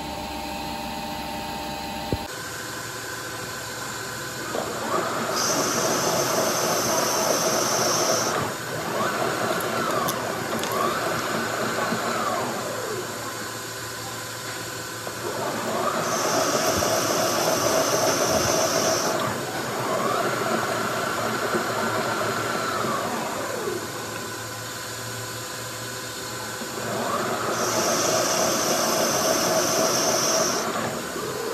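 Metal lathe cutting a screw thread on a steel hydraulic cylinder rod in repeated passes. The cutting gets louder for a few seconds about every 11 seconds, with a whine rising and falling in pitch between passes.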